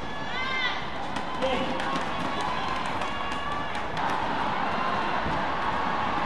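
Badminton court sounds between rallies: court shoes squeak on the mat just after the start and again about three seconds in, over a steady murmur of voices in the hall.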